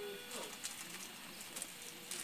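Newborn baby making two short, soft coos around its pacifier in the first half second, followed by faint clicks.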